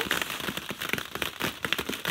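Dozens of hollow plastic ball-pit balls falling and bouncing on a padded play mat: a rapid, irregular patter of light clacks.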